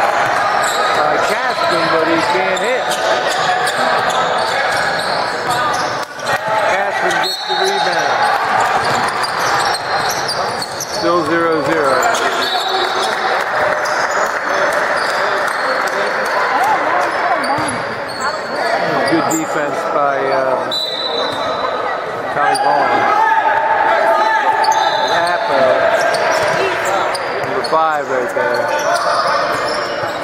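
Basketball game sound in a large gym: a basketball bounced on the hardwood court, with voices of players and onlookers echoing through the hall.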